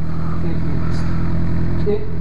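Motorcycle engine running steadily at low speed, a constant low hum heard from on board the bike.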